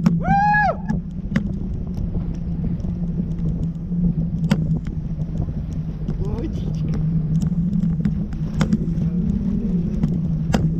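Wind on a parasail rig over open water: a steady low hum with scattered sharp clicks. A brief high-pitched vocal exclamation rises and falls about half a second in.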